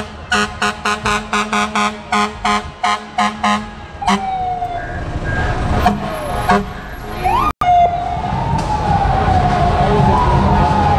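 FDNY fire engine's siren and horn sounding in a parade: rapid pulsed blasts about four a second for the first few seconds, then a wailing siren tone that glides up and slowly falls. The sound cuts out briefly about three quarters of the way through.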